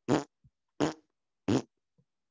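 A man imitating a heartbeat with his mouth: short, breathy vocal beats, three of them evenly spaced about 0.7 s apart.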